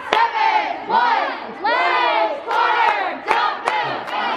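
Cheerleaders shouting together during a stunt: a run of about five loud, high-pitched group calls, each lasting about half a second, with a few sharp smacks among them.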